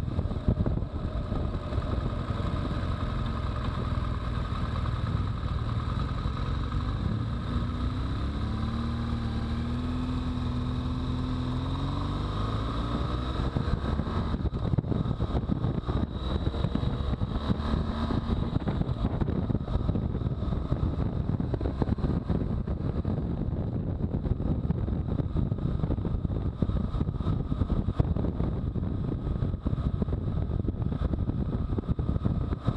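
BMW R1200GS flat-twin engine running at moderate road speed, mostly covered by steady wind noise on the bike-mounted camera's microphone. The engine note changes pitch for a few seconds about a third of the way in.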